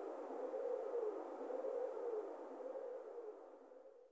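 The closing tail of a dub techno track: a hissing, echoing wash with a wavering mid-pitched hum, fading away until it dies out near the end.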